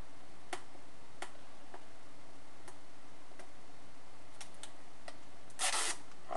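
Sparse light clicks, roughly one every half second to second, over a steady background, then a short, louder burst of rustling noise near the end.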